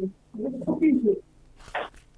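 A woman's voice murmuring briefly in a low pitch, then a short breathy rustle near the end.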